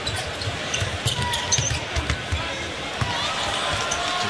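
A basketball being dribbled on a hardwood court, a series of short, irregular low thumps, over the steady murmur of an arena crowd.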